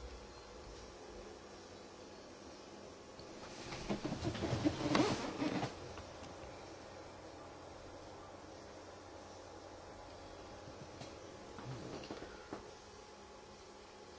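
Quiet room tone broken by a brief burst of rustling about four to six seconds in, with a few faint clicks and knocks near the end.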